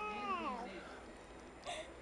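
A small child's high, drawn-out vocal sound that rises and then falls in pitch, fading out under a second in, with a short breathy sound near the end.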